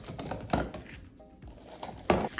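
Hard plastic clicks and knocks as the blade lid is worked loose and lifted off a Ninja Creami outer bowl, the loudest knock about half a second in.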